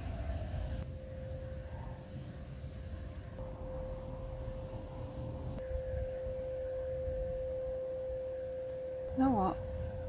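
Vacuum cleaner running, a steady mid-pitched hum over a low rumble. About nine seconds in, a short voice sound with sliding pitch is briefly the loudest thing.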